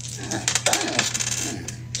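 Papery rustling and rapid flicking of banknotes being handled and thumbed through, starting shortly after the beginning and running on densely, with faint voices in the background.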